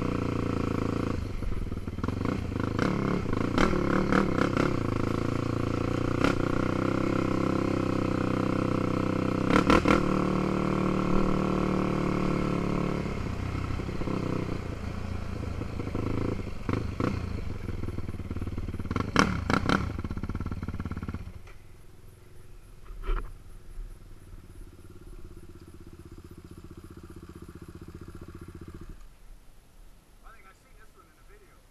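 Dirt bike engine running under throttle along a rough trail, with several sharp knocks and clatters as the bike hits bumps. About two-thirds of the way through it drops to a much quieter steady run, which stops shortly before the end.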